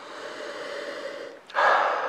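A long, steady sniff through the nose, drawing in a red wine's aroma from the glass, followed about a second and a half in by a shorter, louder breath out.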